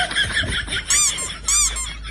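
Two short honks about half a second apart, each rising then falling in pitch, after a quick high chatter: a goose-like comic honk sound effect.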